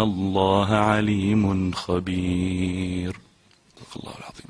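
A man chanting a Quran verse in Arabic in melodic recitation (tajweed), drawing out long held notes that move up and down in pitch; the recitation ends about three seconds in, leaving a short pause.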